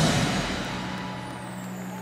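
Indoor percussion ensemble music: a loud full-ensemble hit right at the start, then held low tones and a thin high falling sweep ringing out and slowly fading.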